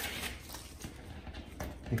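Blue painter's tape being peeled and pulled off a paddleboard deck by hand: faint rustling with a few soft ticks.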